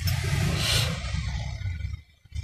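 Low, steady rumble of a car's idling engine heard from inside the cabin, with a brief hiss swelling up a little under a second in. The sound cuts off suddenly at the end.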